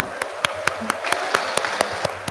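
One person clapping hands steadily, about four claps a second, close to a podium microphone.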